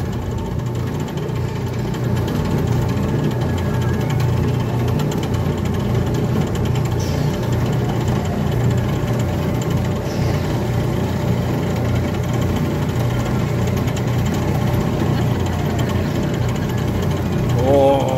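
Small antique-style ride car running along its guide-rail track: a steady low engine hum with light mechanical noise from the car.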